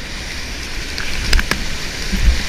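Whitewater rapids rushing steadily around a kayak, with two sharp clicks of paddle or hull contact a little over a second in.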